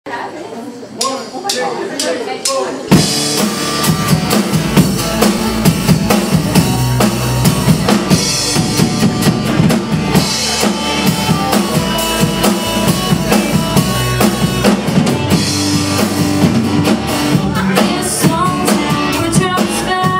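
Live country band playing the instrumental intro of a song: a few sharp clicks, then about three seconds in the drum kit, electric guitars and bass all come in together with a steady beat.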